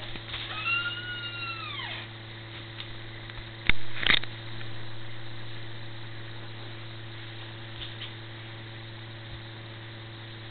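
A single high, drawn-out animal call that rises and then falls in pitch, heard over a steady low hum. About three and a half seconds later come two sharp clicks half a second apart, the loudest sounds here.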